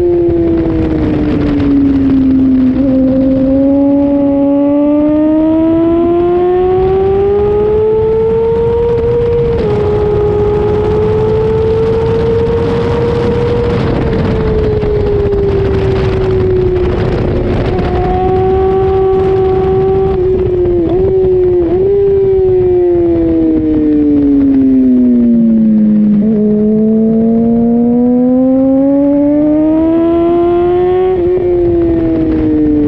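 2005 Honda CBR600RR's inline-four engine on the track under heavy wind rush. The revs fall, then climb steadily, with a sudden drop about ten seconds in where a gear is changed. They hold, dip twice quickly about twenty-one seconds in, fall to a low and climb hard again near the end.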